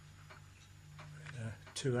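Faint, fairly regular ticking, about two ticks a second, like a clock, over a low steady hum.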